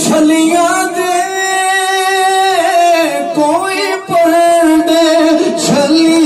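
A man singing a naat solo into a handheld microphone with no instruments, in long held notes that bend in pitch, with a short break for breath about four seconds in.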